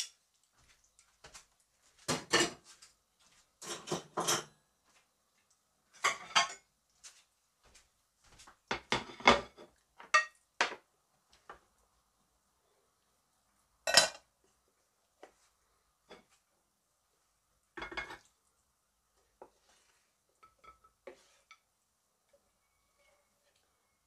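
Kitchen clatter as cooked beef is served from a frying pan onto a plate: a string of separate knocks, clinks and scrapes of the pan, plates and utensils, with quiet gaps between, the sharpest knock about fourteen seconds in.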